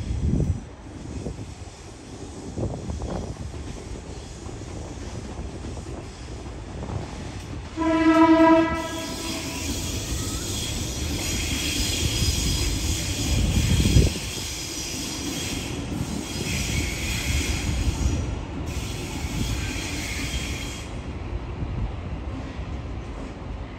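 Sydney Trains double-deck electric train giving one short horn blast about eight seconds in, then running past the platforms with high-pitched wheel squeal and ringing that fade out about a second before the end. A low thump comes about fourteen seconds in.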